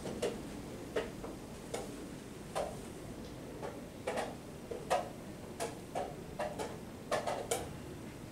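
Irregular light clicks and knocks, about one or two a second, some louder than others: wooden chess pieces being set down and chess-clock buttons being pressed at nearby boards in a playing hall.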